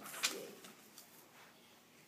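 A brief rustle of paper about a quarter second in as a sheet of paper is handled, with a faint low murmur around the same moment.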